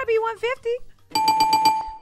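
A bell-like game-show sound effect rings rapidly for about a second, starting about a second in. It holds one steady tone with bright overtones and repeats about six or seven strikes a second.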